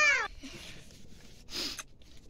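A cat's single meow, its pitch rising then falling, ending a moment in. About a second and a half in comes a short breathy noise.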